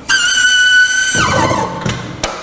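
Hydraulic lowering valve of a DTP04 drum depalletiser whistling as a full drum is let down: a steady high whistle that slides down in pitch after about a second, with a rushing hiss beneath it.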